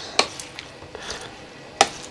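Elderberries being crushed with a hand masher in a small stainless steel saucepan: a sharp click of metal on the pot about a quarter second in and a louder one just before the end, with quieter crushing in between.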